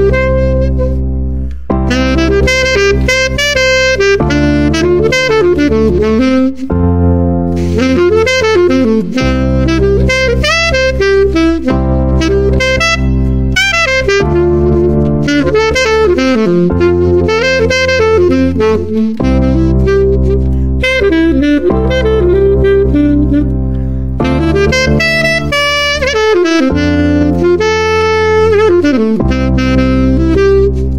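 Jazz saxophone improvising fast melodic runs over a looped backing of sustained chords. The chords change about every two and a half seconds and cycle through the diatonic chords of C major (CMaj7, Dmi7, FMaj7).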